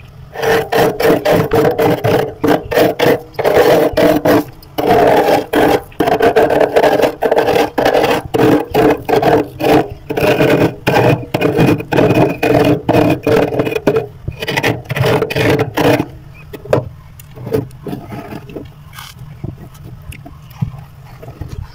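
A big metal spoon scraping thick, flaky frost off the inside wall of a freezer in quick repeated strokes, about two to three a second. Near the end the strokes turn quieter and sparser.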